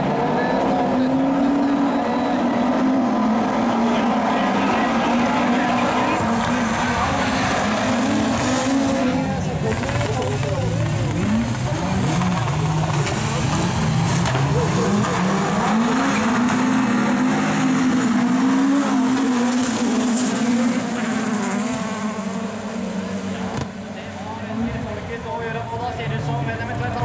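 A pack of Super 2400 rallycross cars racing off the start and through the corners, several engines revving hard, their pitch rising and falling together as they change gear. The sound grows somewhat fainter near the end as the cars pull away.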